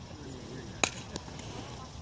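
A single sharp crack of a bat hitting a softball a little under a second in, followed by a fainter knock.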